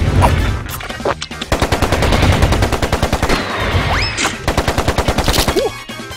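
Cartoon sound effect of a rapid burst of sharp hits like machine-gun fire, more than ten a second, running for about four seconds from a second and a half in. A short rising squeal cuts through it near the middle, and there is a laugh at the start.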